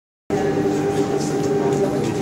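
Cable car machinery running at a station: a steady mechanical hum with several steady whining tones. It starts abruptly just after the beginning.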